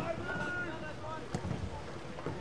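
Faint, distant voices calling out over a low outdoor background noise, with a single light knock about a second and a half in.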